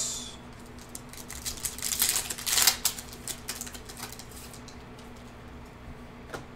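Hands opening a box of basketball trading cards and handling its contents: a run of clicks and crinkling rustles of cardboard and cards, loudest two to three seconds in, then a few lighter clicks.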